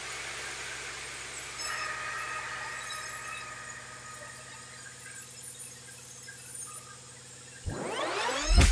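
Sawmill band saw running with a steady hum, and a thin, high squeal from the blade cutting through a sengon log that sets in about two seconds in.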